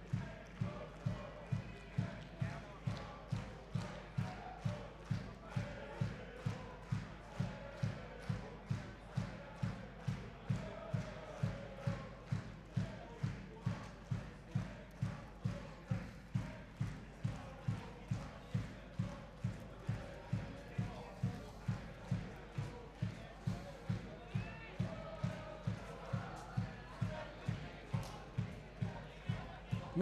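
A supporters' bass drum beaten steadily at about two beats a second in the stands, with faint crowd chanting underneath.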